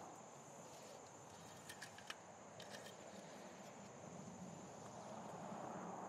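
Near silence: a faint steady hiss with a thin high tone, and a few faint light clicks and rustles as the engine-oil dipstick is pulled and wiped with a rag.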